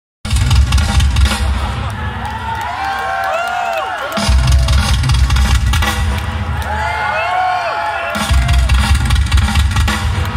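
Live rock band playing loud through a PA, heard from within the audience: drums and bass under a melodic line with sliding notes. The drums and bass drop out twice for a couple of seconds, about two seconds in and again near seven seconds, then come back in.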